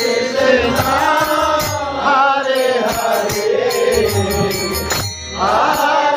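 Harmonium accompanying devotional chanting of a mantra, with regular percussive strikes keeping the beat; the singing pauses briefly about five seconds in, then resumes.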